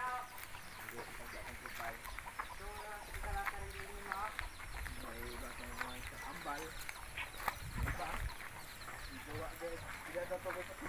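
Chickens clucking in short, scattered calls, mixed with indistinct voices.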